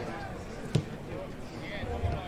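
A football struck once with a foot, a sharp kick about three-quarters of a second in, as players pass in a training drill, with voices calling across the pitch.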